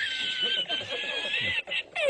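A man laughing in a very high-pitched, squeaky voice. The laugh breaks off briefly about one and a half seconds in, then starts again.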